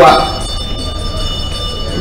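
A man's word ends, then a short pause filled with a steady low background rumble and a few faint, steady high-pitched tones.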